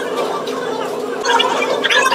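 Indistinct background voices over a steady low hum, with the talk picking up in the second half.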